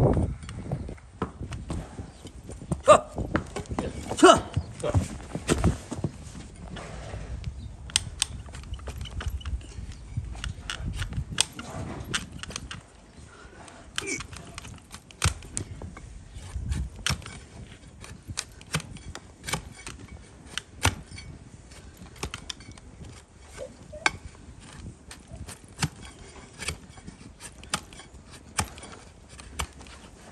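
Donkey hoof horn being pared with a large flat shovel-style hoof knife pushed down through the hoof onto a wooden stool. There is a long run of sharp, crisp cracks at an uneven pace, loudest and most frequent in the first few seconds.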